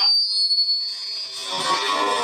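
Live open-mic music with guitar: a steady high tone sounds for about the first second while the rest of the music drops away, then the music comes back in.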